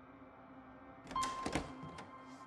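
Horror film trailer soundtrack: a low steady drone, then a few sharp knocks about a second in, joined by a thin high held tone.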